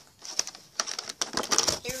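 Clear plastic blister packaging of an action figure being handled, giving a run of light clicks and crinkles.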